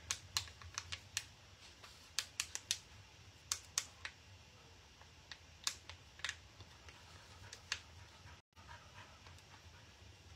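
Faint, irregular sharp clicks and crackles of a plastic transfer backing sheet being rubbed and pressed down with the fingers, a few a second with gaps between.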